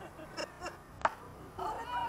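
A baseball bat strikes a pitched ball once, a sharp crack about a second in. Spectators then start yelling and cheering near the end as the ball is put in play.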